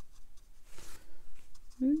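Faint brushing of a round watercolor brush dabbing and stroking wet paint onto cotton cold-press watercolor paper, with a soft rustle about the middle. A woman's voice starts an "ooh" right at the end.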